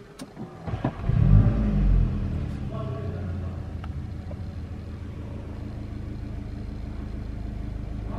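2021 Volkswagen Golf 8 GTI's 2.0-litre turbocharged inline-four petrol engine starting, heard from inside the cabin: a few clicks, then about a second in the engine catches with a loud flare of revs lasting about a second, and settles into a steady idle.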